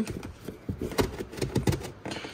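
Plastic access door in a wheel-well liner being pushed and twisted into its opening: a run of small irregular clicks and scrapes of plastic on plastic, with one sharper click about halfway through.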